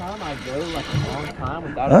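Speech only: a person talking, with no words clear enough to be written down.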